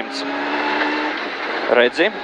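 Rally car engine pulling hard at about 100 km/h on a gravel stage, its note steady over a haze of tyre and gravel noise, heard from inside the cabin.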